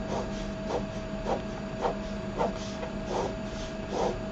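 Ballpoint pen drawing straight lines on paper, a short scratchy stroke roughly every half-second, over a faint steady hum.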